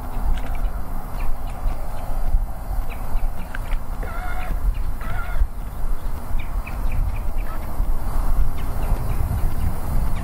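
Wind buffeting the microphone, an uneven low rumble. A bird calls briefly a few times about four to five seconds in.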